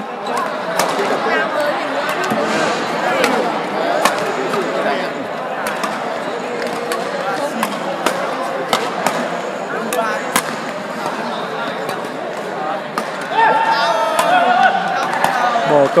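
Badminton rackets striking the shuttlecock in a singles rally: sharp hits about a second apart, over steady background chatter in a large sports hall.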